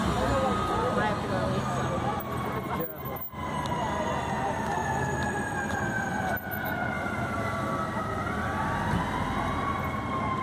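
Emergency vehicle siren wailing, its pitch gliding slowly down for most of the time and rising again near the end, over city street traffic.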